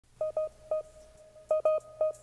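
A handful of short electronic beeps at a single pitch in an uneven rhythm, mostly in pairs, over a faint held tone at the same pitch and a low hum: a phone-like beep intro to a hip-hop track.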